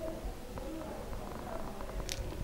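A pause in speech: faint low rumble and room noise, with a few faint, short tones in the background.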